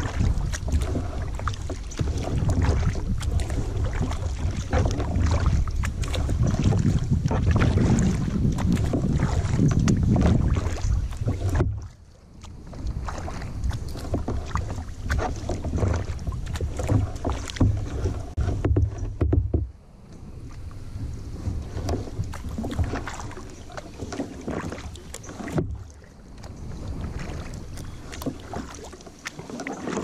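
Kayak paddling on a lake: water sloshing and dripping from paddle strokes against the hull, with frequent small splashes. Wind buffets the microphone with a heavy rumble for the first twelve seconds or so, then it drops away sharply and returns only in short gusts.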